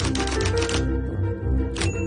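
Rapid typewriter key clicks, a typing sound effect, over background music with low sustained notes. The clicks stop about a second in, and one more strike comes near the end.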